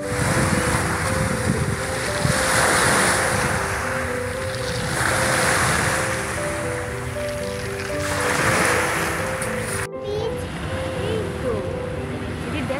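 Small choppy waves washing on a rocky, pebbly shore, the wash swelling and fading about every three seconds, under background music with a slow melody of held notes. The sound cuts out briefly near the end.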